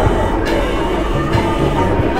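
New York City subway car running, heard from inside the car: a loud, steady rumble and rattle of the train on the track.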